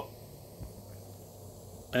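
A small remote-canister backpacking gas stove burning steadily under a steel pot of water, giving a faint, even hiss.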